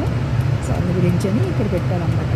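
A person talking, heard over a steady low hum inside a stationary car.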